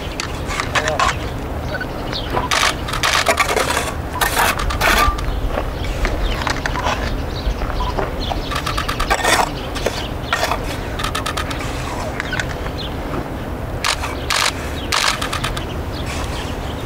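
A steel mason's trowel scraping and clinking against a metal bucket as it scoops mortar, then scraping mortar onto stone. The scrapes come in short irregular clusters a few seconds apart.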